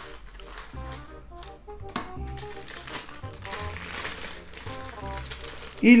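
Quiet background music, a melody of short notes, over the crinkling of a plastic bag being slid out of a cardboard box sleeve.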